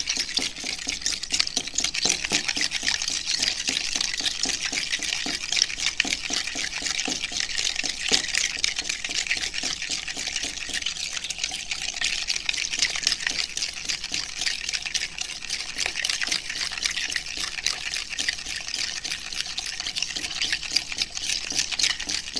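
A spoon stirring borax powder into water in a plastic cup, a continuous rapid scraping and swishing as the borax is dissolved.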